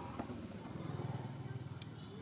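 Low, steady hum of a running engine, with one sharp click near the end.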